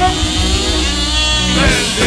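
Live rock band music in which a jaw harp, played close to the microphone, holds a steady low drone while its overtones sweep up and down in a twanging, warbling line.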